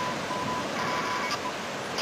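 Steady outdoor noise of wind and lake waves. A thin, high, steady tone breaks in and out in short pieces through the first second and a half.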